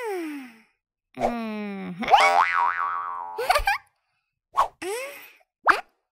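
Cartoon sound effects: a string of boing-like pitch glides, falling at first and wobbling up and down in the middle, with short pops in the second half.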